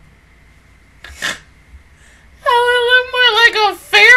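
A woman's high-pitched, drawn-out whimper with a wavering pitch that sinks at its end, then a second short one near the end. A sharp breath comes about a second in.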